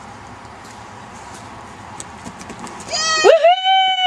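A person's long, high-pitched scream starting about three seconds in, rising quickly, holding, then sliding down in pitch.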